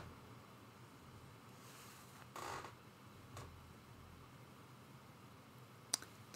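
Near silence: room tone, with a faint short rustle about halfway through and a faint tick a second later.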